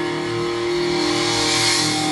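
Live heavy metal band playing: a distorted electric guitar holds a sustained chord over drums, and a cymbal wash swells near the end.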